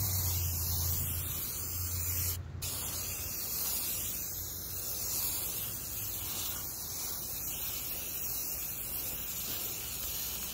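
Aerosol spray-paint can spraying black paint onto a plastic car grille in one long hiss, broken once briefly about two and a half seconds in as the nozzle is let off.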